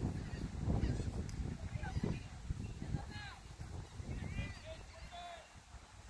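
Wind buffeting the microphone in low gusts, loudest in the first two seconds, with a few short bird calls in the background from the middle onward.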